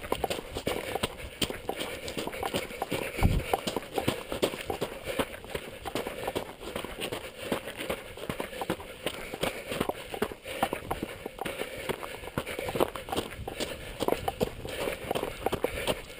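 Footsteps crunching on loose stony scree and gravel at a brisk walking pace, a continuous irregular run of crunches and rock clatter, with a single low thump about three seconds in.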